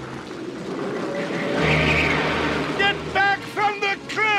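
Animated-soundtrack storm effect: a steady rush of heavy rain and wind that swells about halfway through. Near the end comes a quick run of short high-pitched tones, each falling in pitch.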